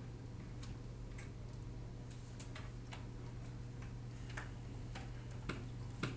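Quiet room tone: a steady low hum with faint, irregular clicks and taps, about seven or eight in all.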